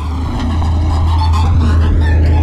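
Car close above the camera at ground level: a loud, steady deep engine rumble with road noise, the higher sound slowly sweeping in pitch as if the car is moving over or past the camera.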